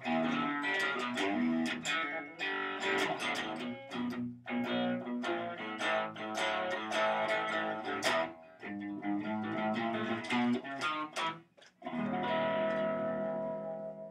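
Instrumental guitar passage of plucked notes and strums. After a brief break it ends on a final chord that rings out and fades.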